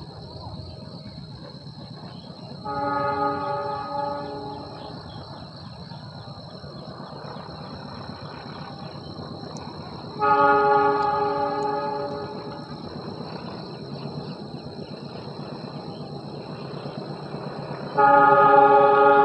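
Diesel locomotive horn sounding two long blasts, each about two seconds, the first about three seconds in and the second about ten seconds in, over a low steady rumble of the approaching train. Each blast is a chord of several tones.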